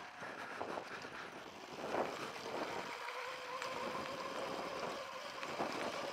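Sur-Ron Light Bee electric dirt bike rolling slowly along a gravel track on a little throttle from a nearly flat battery: a steady motor whine comes in about a second and a half in, over a rush of tyre and wind noise.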